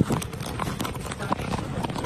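Handling noise on a handheld camera's microphone as it is jostled and its lens covered: a rapid, uneven run of knocks and rubbing, with a voice under it.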